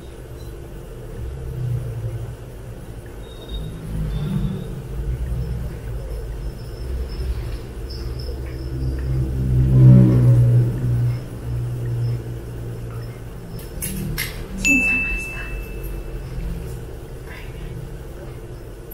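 Close-miked eating of jjajangmyeon black bean noodles: chewing and slurping, loudest about ten seconds in as a mouthful of noodles goes in. Near the end, a few metal chopstick clinks on the dishes, one ringing briefly.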